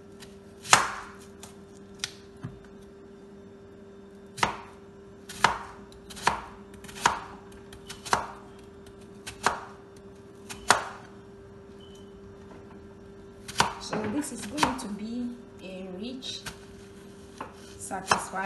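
Kitchen knife chopping a white onion on a plastic cutting board. Single sharp strikes on the board come about a second apart, then a quicker run of cuts near the end.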